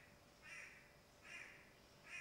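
A bird calling faintly, twice, about three-quarters of a second apart, over near silence.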